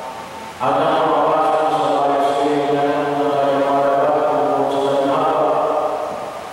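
A priest chanting into a handheld microphone: one man's voice holding long, steady notes on a sung liturgical line. It comes in after a brief pause and moves to a new note about five seconds in.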